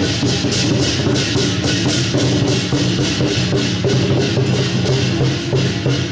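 Temple procession music: percussion struck in a fast, steady beat over a low melodic line.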